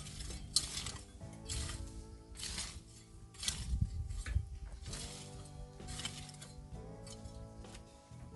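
Metal garden rake dragged through stony, dry soil, its tines scraping and clinking against stones in strokes about once a second.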